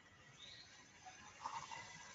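Near silence: faint room tone, with a couple of faint, brief indistinct sounds about half a second and a second and a half in.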